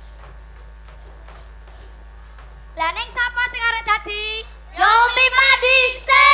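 Children's voices chanting and calling out in a sing-song way as part of a traditional Javanese children's game performance, coming in about three seconds in and growing louder near the end. Before that there is only a steady low hum.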